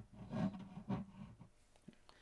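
Quiet workshop room tone with two faint, brief murmurs in the first second and one small click near the end.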